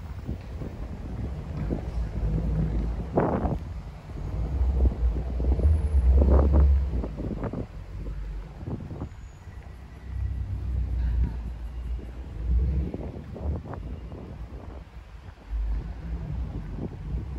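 Gusty wind buffeting the microphone: a low rumble that swells and fades, strongest about five to seven seconds in and again around the eleven-to-thirteen-second mark.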